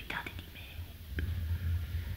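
Soft whispered speech close to the microphone, with a faint low hum underneath and a small click about a second in.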